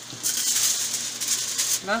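Sheet of aluminium foil crinkling and crackling as it is handled and the chicken roll is laid on it, loud for about a second and a half before stopping near the end.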